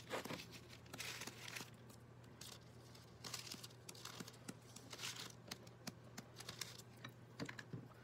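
Faint paintbrush strokes and light taps on a crinkled, metallic-painted paper sheet: short soft brushing swishes and scattered small ticks and crinkles, over a steady low hum.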